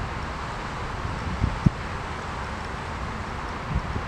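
Wind buffeting a handheld camera's microphone outdoors as a steady low rumble, with one short knock about a second and a half in.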